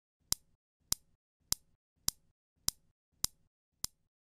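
Steel balls of a Newton's cradle clacking together: seven sharp clicks, evenly spaced a little over half a second apart, the last one softer.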